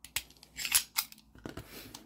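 A gravity knife being handled, closed and set down on a cutting mat: a few sharp metallic clicks, then a short rasp near the end.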